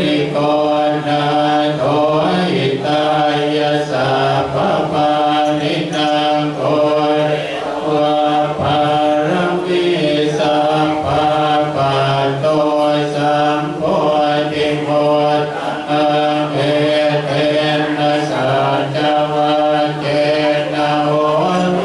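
Thai Buddhist monks chanting together in unison: a continuous, low, near-monotone recitation in steady rhythmic syllables.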